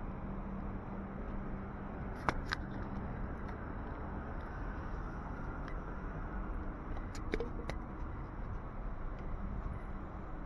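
Street ambience: a steady hum of traffic, with a few sharp clicks, a pair about two seconds in and another pair past seven seconds.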